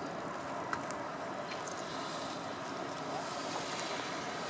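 Steady outdoor background noise at the waterside, wind buffeting the microphone. There are a few faint high chirps and one small click about three-quarters of a second in.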